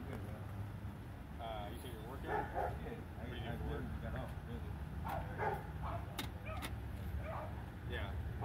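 A dog barking in short bursts several times at a distance, over a steady low hum of an idling vehicle, with faint indistinct voices.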